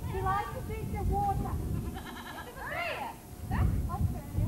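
A mixed herd of goats and sheep bleating. There is a wavering bleat about halfway through, then a rising-and-falling call, with people's voices around them.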